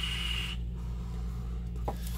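Draw on an e-cigarette box mod: a steady hiss of air pulled through the atomizer, with the heated coil sizzling, cut off sharply about half a second in. A softer breathy exhale of vapour follows.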